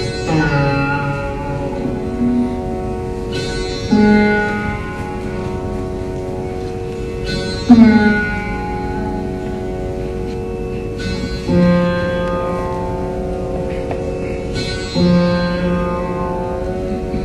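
Rudra veena playing a slow, unmetred alaap in raga Jaijaiwanti. About five single plucked notes come one every three to four seconds, each left to ring and bent in slow glides, over the steady sound of the sympathetic and drone strings.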